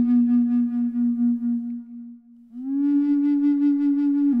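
Slow, low flute music in the key of E. A long held note fades out about two seconds in, and after a brief pause a slightly higher note begins and is held.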